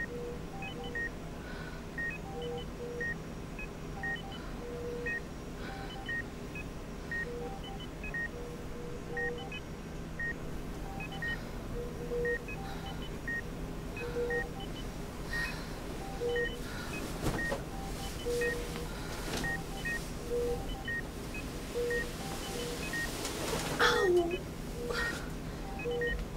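Hospital medical equipment beeping: short electronic beeps at two pitches, repeating out of step with each other about once or twice a second, over a steady low hum. A brief falling swoosh comes at the very end.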